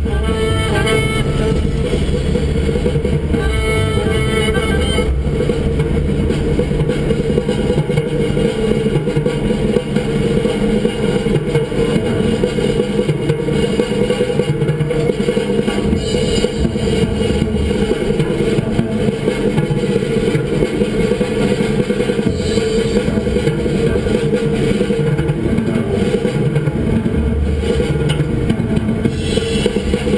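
Music with a guitar playing on the car radio over steady road and engine noise inside the moving car's cabin.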